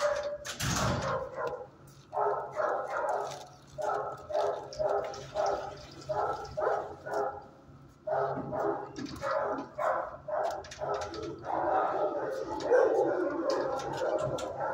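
Dogs in nearby shelter kennels barking in runs of quick barks, about two to three a second with short pauses, growing denser near the end. A loud sharp sound comes just under a second in.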